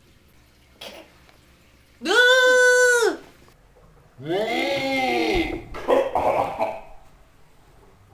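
A child's wordless, drawn-out vocal cries: a high one held about a second, then a lower, longer one that trails into rough, breathy grunting.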